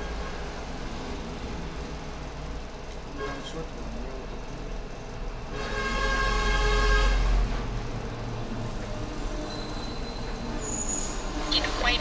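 Steady background rumble of vehicle traffic, with one louder pitched vehicle sound swelling for about two seconds around the middle.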